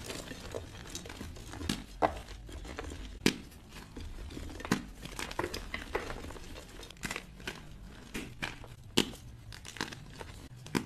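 Blocks of gym chalk (magnesium carbonate) being crushed and crumbled in bare hands: a steady crunching broken by irregular sharp cracks as pieces snap apart, the loudest about two, three and nine seconds in.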